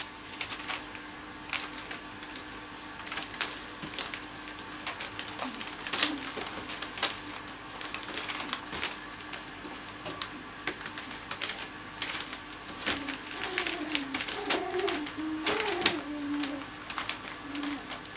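Newspaper crinkling and rustling in quick irregular crackles under two wrestling cocker spaniel puppies. In the last third a puppy gives a short run of small, wavering squeaky whines.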